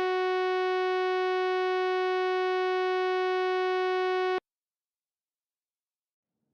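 A single synthesizer note held steady, rich in overtones, closing a piece of electronic music. It cuts off abruptly about four and a half seconds in, leaving dead silence.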